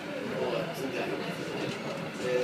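Indistinct chatter of many voices over a steady background noise in a busy indoor hall.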